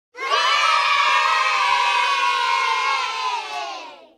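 A group of children cheering and shouting together in one long cheer that fades out near the end.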